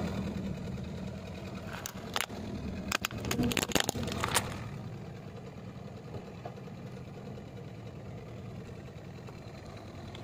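Car engine running slowly as the tyre rolls over a hard plastic toy pram holding a doll. A cluster of sharp plastic cracks and crunches comes from about two to four and a half seconds in, then only the low engine hum goes on.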